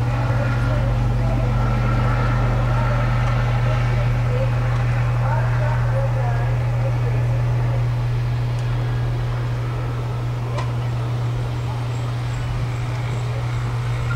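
A steady low hum runs through at an even level, with faint indistinct voices in the background.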